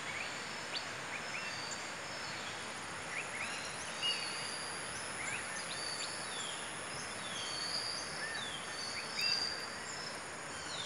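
Several forest birds calling: short chirps and quick downslurred whistles, scattered irregularly, with a slightly louder call about four seconds in and another near the end. Behind them run a steady background hiss and a constant high-pitched tone.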